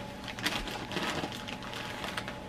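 Wrapping paper on a present crinkling and rustling as a dog noses and tugs at it, in short irregular crackles.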